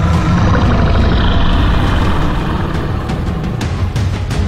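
Dramatic action-film score over a heavy, continuous low rumble, with a couple of sharp hits near the end.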